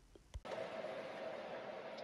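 A single faint click, then steady background hiss with a faint steady hum setting in about half a second in: room noise with no clear mixing sound standing out.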